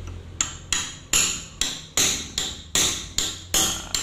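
Hammer blows on metal, about ten evenly spaced strikes with a short bright ring each, knocking at a front shock absorber during its initial disassembly.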